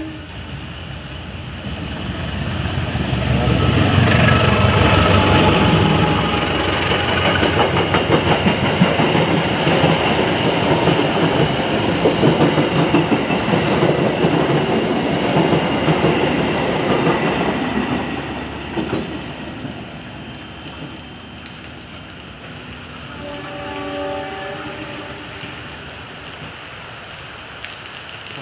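A diesel-hauled passenger train running through a station: the locomotive's rumble builds over a few seconds, then a long run of wheels clattering over the rail joints as the coaches pass, fading after about eighteen seconds. A faint, steady horn sounds for a couple of seconds near the end.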